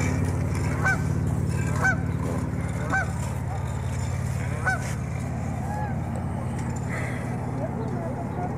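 Geese honking: about five short calls spaced roughly a second apart, thinning out after about six seconds, over a steady low hum.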